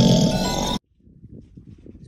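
A loud snore over background music, both cutting off abruptly less than a second in, followed by faint background noise.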